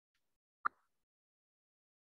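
A single short click a little over half a second in, with silence around it.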